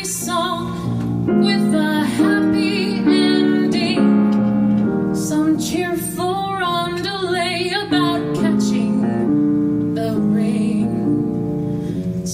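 A woman singing a show tune with vibrato, accompanied by piano.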